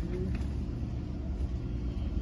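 Steady low rumble of a laundromat's running machines, with faint voices in the background.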